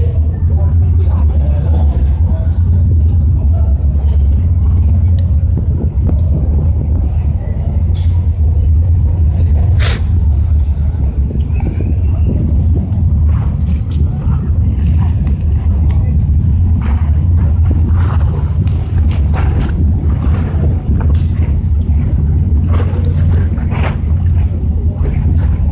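Wind buffeting a phone's microphone: a loud, steady low rumble that wavers throughout, with a single sharp click about ten seconds in.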